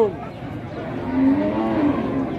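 A cow mooing: one low, drawn-out moo of about a second, starting about a second in.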